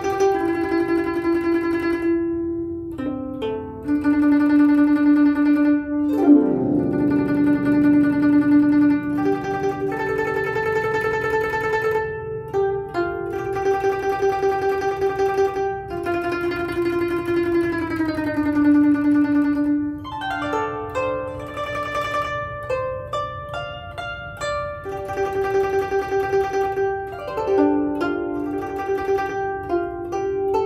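Guzheng plucked with finger picks, playing a slow melody of ringing notes that the left hand bends in pitch by pressing the strings. A sweeping glissando across the strings comes about six seconds in, with shorter slides later.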